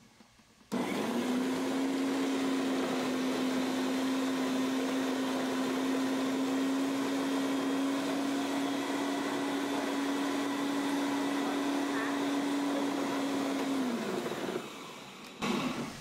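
Electric food processor chopping mint, onion and garlic in olive oil into a paste. The motor starts about a second in, runs with a steady hum, and winds down near the end, followed by a short knock.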